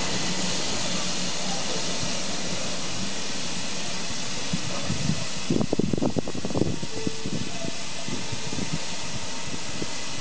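Steady hiss of steam from a standing BR Standard Class 2 steam locomotive, 78022. The hiss drops away about halfway through, with a short stretch of uneven low rumbling around the middle.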